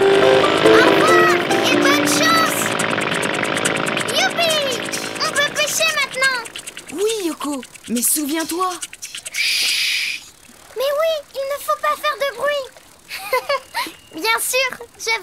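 Cartoon hovercraft motor sound effect over music as the craft pulls away, dying down after about five seconds. Then a run of short sliding tones, with a brief hiss just before ten seconds.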